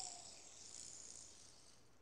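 Near silence: a faint high hiss that fades away and stops near the end.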